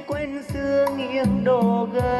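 A Vietnamese bolero song playing through a pair of Aiwa SX-LMJ2 bookshelf speakers, with a strong bass: bass notes come in every half second to a second under the melody.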